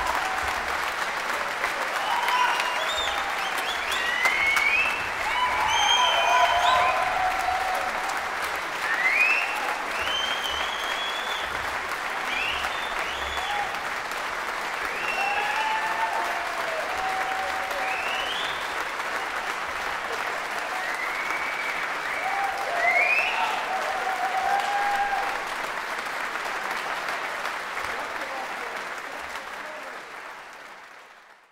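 Concert-hall audience applauding steadily, with scattered voices calling out over the clapping. The applause fades out near the end.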